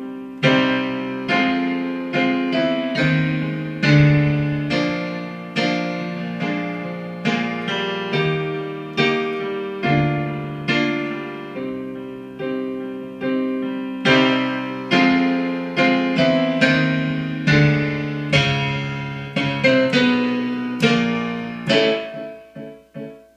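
Solo piano playing on a digital piano: chords struck about once a second, each ringing and fading before the next.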